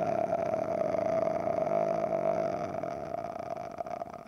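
A man's vocal fry: one long, low creaky rattle of the voice held on a single vowel, tapering off near the end. It is demonstrated as an exercise that brings the vocal cords together to retrain correct closure.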